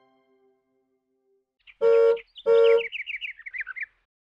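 The song's last note fades out. After a pause come two loud, short toots on the same pitch, about half a second apart, then a quick run of about eight high chirps sliding down in pitch, as in a cartoon bird-tweet sound effect.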